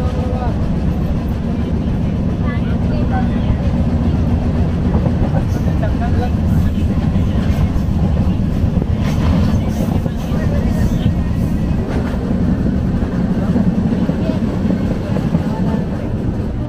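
Steady low rumble of a moving passenger train heard from inside a crowded carriage, with passengers' voices over it. A few sharp clicks or knocks come through around the middle.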